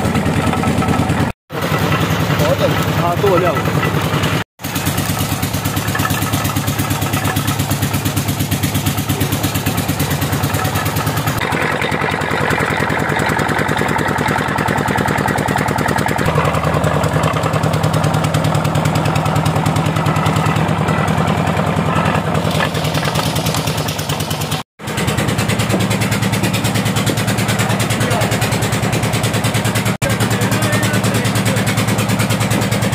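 Engine driving a sugarcane crusher, running steadily with a fast, even beat. The sound drops out briefly three times and changes tone slightly partway through.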